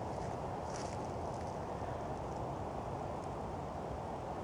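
Steady low outdoor background rumble, with a few faint high ticks or chirps about a second in.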